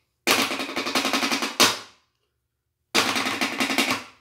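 Wooden drumsticks drumming very fast on a box top, in two loud runs of rapid strokes: one about a second and a half long ending on a hard accent, then after a short gap a second run about a second long.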